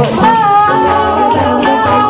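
A woman singing live into a microphone, holding one long steady high note, over a layered a cappella backing with a low pulsing beat.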